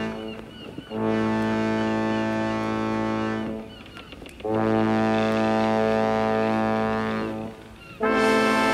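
Ship's horn sounding long, low, steady blasts of about two and a half to three seconds each, with short pauses between them.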